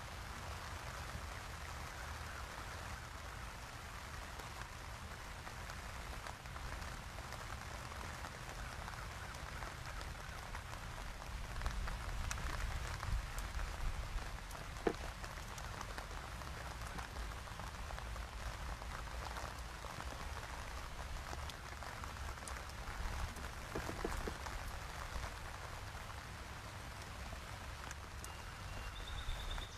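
Steady outdoor ambience: an even, rain-like hiss over a low, fluctuating rumble, with a few faint clicks about halfway through and again near the end.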